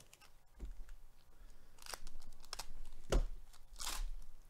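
Foil wrapper of a trading-card pack being torn open and crinkled, in a few short rips in the second half.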